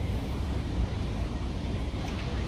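Steady low rumble of city background noise, without distinct events.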